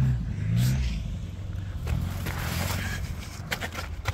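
Four-wheel-drive vehicle engine working up a rocky off-road climb, revving in the first second, then running steadily and slowly fading as it pulls away.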